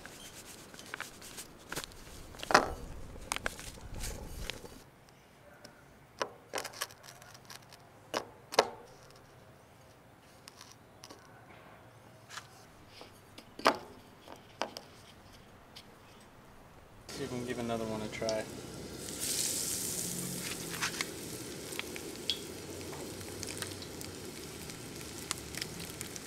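Scattered rustles and clicks of a breading bag and bowl as fish pieces are coated. About two-thirds of the way in, breaded crappie pieces go into hot oil in a cast-iron skillet and a steady sizzle of frying starts.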